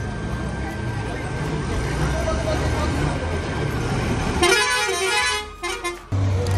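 Road traffic rumbling under voices, then a vehicle horn honks once, loudly, about four and a half seconds in, lasting under a second.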